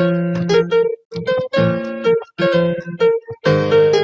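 Computer-played keyboard tones triggered from a homemade Arduino MIDI keyboard controller: single notes and notes sounding together as chords, in short phrases broken by brief gaps about a second apart.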